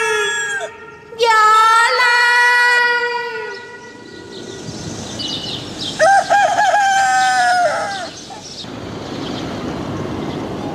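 Long, drawn-out, high vocal cries in a tragic cải lương scene, the names of the lovers called out: one held cry that slides in and drops away at its end, then a second, wavering cry about six seconds in.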